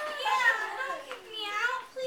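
Speech only: a young performer's voice talking, its pitch swinging up and down.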